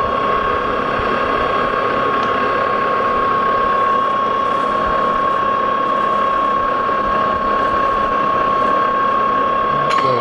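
Lodge & Shipley metal lathe running with its gearing turning, set up for thread cutting. It gives a steady high whine over an even mechanical clatter.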